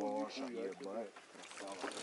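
A man's voice speaking quietly for about the first second, then faint low background noise with no clear event.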